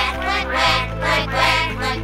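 Cartoon duck quacks in time with the beat of upbeat children's stage music, a quick run of quacks over a steady bass line.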